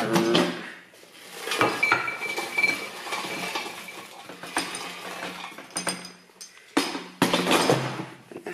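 Plates and cutlery clinking and knocking as food is served, with several sharp knocks and a short ringing tone about two seconds in.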